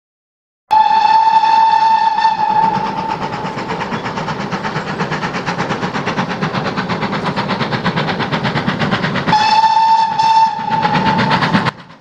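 Steam locomotive running at speed: a long steam-whistle blast over a fast, even chuffing and clatter, with a second whistle blast near the end.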